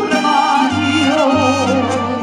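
Mariachi band playing an instrumental passage between sung lines: trumpets and violins carry a wavering melody over low, separately struck bass notes.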